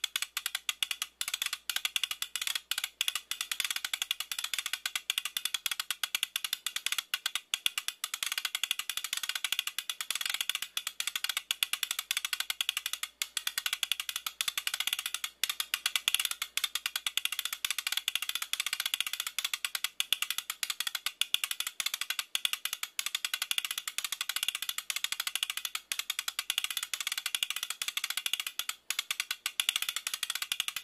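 Film projector clatter: a steady, rapid run of fine clicks with no pitched tones, laid over a silent film.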